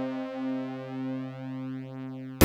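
Oberheim OB-Xa analog polysynth holding a sawtooth pad chord. Its voices beat slowly against one another as the sound fades away.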